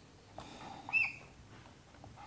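Whiteboard marker squeaking against the board while a tick mark is drawn: a faint scrape, then one short high squeak about a second in.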